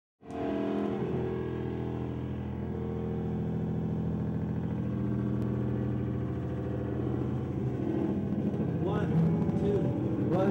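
A live rock band's amplified instruments hold a steady drone of several notes. Voices come in near the end.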